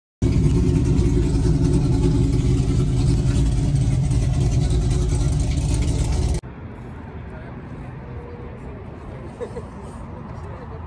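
Loud car engine running steadily, then cutting off abruptly about six seconds in. A much quieter background noise follows.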